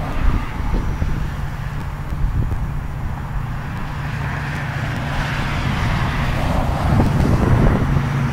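Cars passing on a road, with wind rumbling on the microphone. The traffic hiss swells over the second half as a car goes by.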